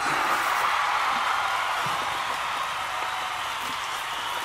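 A steady, even hiss of background noise that fades slightly, with a few faint ticks.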